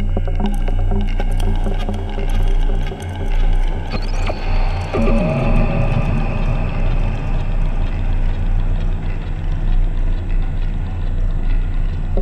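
Eurorack modular synthesizer music, its notes generated from a houseplant's signals through an Instruo Scion module. It holds a steady low drone under sustained tones and scattered blips, with a tone sweeping down in pitch about five seconds in.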